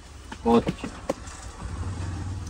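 A man says one short word, over a low rumble that swells near the end and a few faint clicks.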